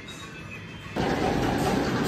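Soft background flute music with held notes. About a second in it cuts off and a louder, even noise takes over.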